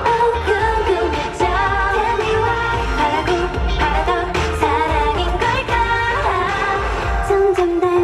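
K-pop song with a girl group's female voices singing over a pop backing track with a steady, pulsing bass beat.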